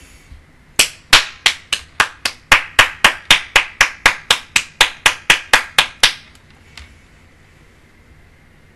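One person clapping her hands close to the microphone: a steady run of about twenty sharp claps, roughly four a second, lasting about five seconds.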